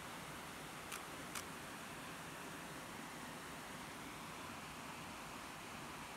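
Steady hiss of a stream running over small rocky drops. About a second in come two light clicks, half a second apart.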